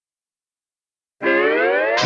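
Silence, then a little over a second in, a steel guitar sounds and slides steadily upward in one long rising twang that opens a cartoon's title music.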